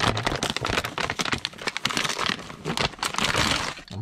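Clear plastic vacuum-seal bag crinkling and crackling irregularly as a 3D-printer filament spool is worked out of it.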